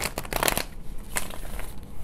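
A deck of tarot cards riffle-shuffled by hand: a fast rattle of cards flicking together in the first half-second, then a single sharper snap just past a second.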